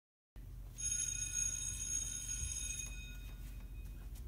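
A bell struck once, ringing with several clear high tones that fade away over about three seconds, over a low rumble. It stands in for the school bell.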